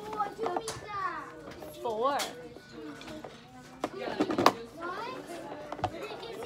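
Classroom voices: a woman and young children talking, with several short knocks, the loudest about four and a half seconds in.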